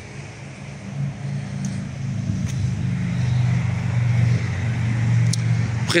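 A motor vehicle engine running with a steady low hum, growing louder from about a second in.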